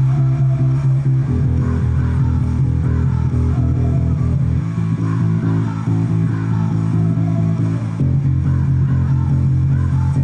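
Squier PJ electric bass played fingerstyle along with a recorded rock song, holding sustained low notes that change about every three seconds.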